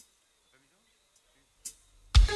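Near silence in a pause between songs, broken by a brief click at the very start and one short, crisp hissy burst near the end.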